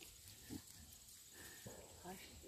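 Piglets grunting softly: two short low grunts, one about half a second in and another near the end.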